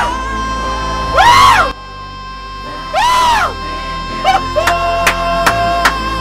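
A live vocal performance with backing music: a male singer holds one long high note while high vocal cries swoop up and down three times over a cheering crowd. A run of sharp beats starts about four seconds in.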